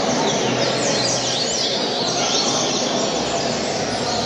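Coleiro (double-collared seedeater) singing in a caged song contest: rapid, repeated sweeping chirp notes, over a steady din of other caged birds and a large room.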